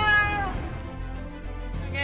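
A high-pitched, drawn-out wailing cry that slides down in pitch and fades out about half a second in, over a low, steady background of music.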